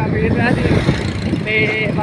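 A man's voice talking loudly over a steady low rumbling noise.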